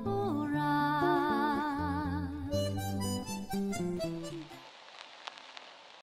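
Harmonica music: a melody held with vibrato over bass and chord notes, stopping about four and a half seconds in. A faint hiss with a few soft clicks follows.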